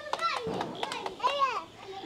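Children's voices calling out as they play, with light scattered crackles from hand-held sparklers.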